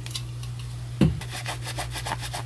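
Rustling and rubbing of a paper towel being handled with scissors, in quick short strokes, with one low thump about a second in.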